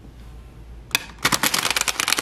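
A deck of tarot cards being shuffled: a single tap about a second in, then a quick run of rapid card flicks.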